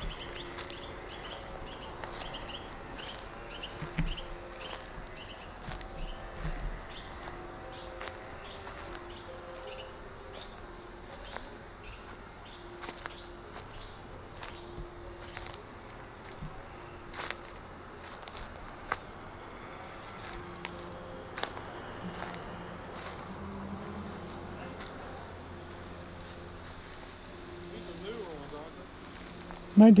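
Crickets and other insects singing: a steady high-pitched trill, with a repeating chirp pulsing over it that fades out about a third of the way in.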